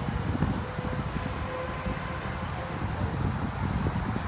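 Wind buffeting a handheld phone's microphone outdoors, a steady low irregular rumble, with a faint steady hum beneath it.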